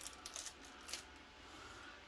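Faint clicks and taps as a small flexible plastic tripod is handled and stood on a wooden table, a few in the first second, then quiet room noise.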